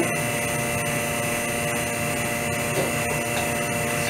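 Vacuum pump running with a steady hum, holding suction on the bagged prosthetic socket so that the resin is drawn down through the lay-up during lamination.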